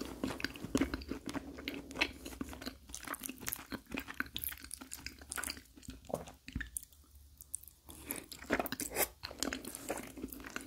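Close-miked chewing of a mouthful of lasagna: a dense run of quick wet clicks and smacks from the mouth, with a quieter pause about seven seconds in.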